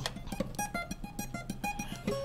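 Acoustic guitar played solo: a quick run of single picked notes, about seven or eight a second, with no singing over it.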